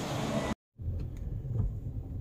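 Steady hiss of a room's air-conditioning, broken off about half a second in by a split second of dead silence, then the low rumble of a car's idling engine heard from inside the cabin.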